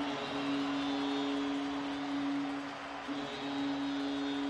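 Arena goal horn sounding one long, steady low tone, with a brief break about three seconds in, over the crowd cheering the goal.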